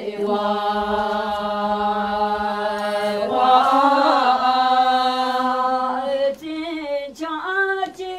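A group of women singing a traditional Bhutanese song together without instruments, drawing out one long held note that swells louder about halfway through and stops after about six seconds, then moving into shorter wavering phrases near the end.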